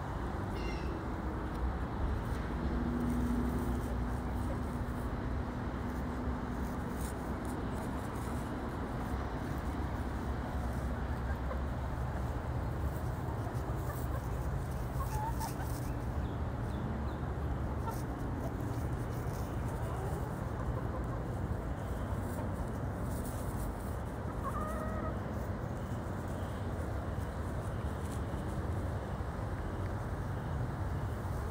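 Backyard hens clucking softly while foraging, with a low drawn-out call a couple of seconds in and a few short chirping calls later on, over a steady low rumble.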